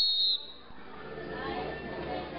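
A short, loud whistle blast at a steady high pitch, cut off about a third of a second in, blown to cue students at marching drill. Voices murmur after it.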